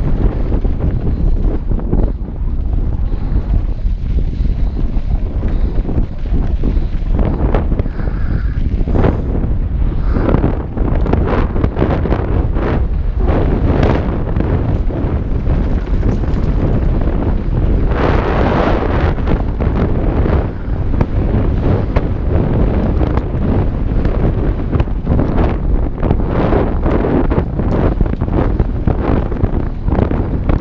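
Wind buffeting the action camera's microphone as a mountain bike descends a dry dirt and loose-rock trail at speed, under frequent knocks and rattles from the bike and tyres over the rough ground. A louder, hissier stretch of about two seconds comes just past the middle.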